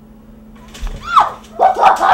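A person yelping and barking like a dog: several short, loud calls that rise and fall in pitch, starting just under a second in.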